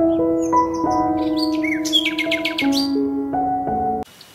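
Background music of held notes changing every second or so, with birds chirping over it from about half a second in until about three seconds in, including a fast run of chirps in the middle.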